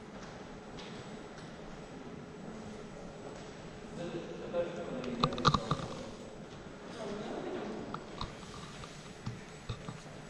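Indistinct voices of people talking in the background, starting about four seconds in and returning near the eighth second, over a quiet hall hum, with a few light clicks in the middle.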